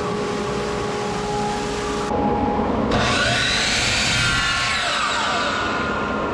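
Workshop dust collector's blower motor coming up to speed and running with a steady hum. About three seconds in, a power miter saw's motor spins up over it with a rising whine, then winds back down.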